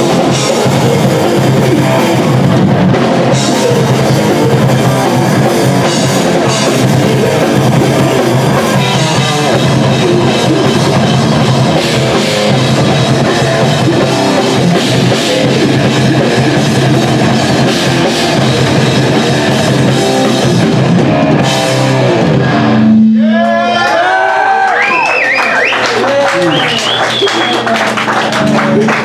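Live crossover thrash metal band playing fast and loud, with drum kit, distorted electric guitars and bass. About 23 seconds in the full band drops out, leaving a held low note and guitar squeals sliding up and down in pitch.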